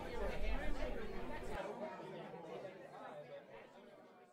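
Chatter of several voices, fading steadily away to near silence.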